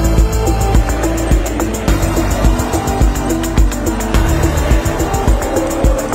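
Electronic background music with a heavy bass beat, the low thumps coming about twice a second.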